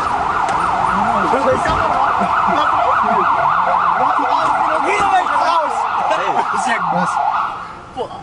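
Police car siren in its fast yelp mode, its pitch swinging up and down about four times a second, cutting off near the end. Voices can be heard faintly beneath it.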